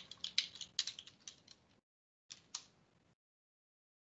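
Typing on a computer keyboard: a quick run of keystrokes over the first second and a half, then two more clicks about two and a half seconds in.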